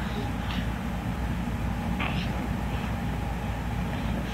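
Steady low rumble of handling noise on a handheld camera's microphone as the camera is moved about close to the subject, with two faint short sounds about half a second and two seconds in.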